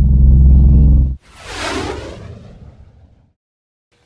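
Transition sound effects: a loud, low, steady propeller-plane engine drone that cuts off suddenly about a second in, followed by a whoosh that fades away over about two seconds.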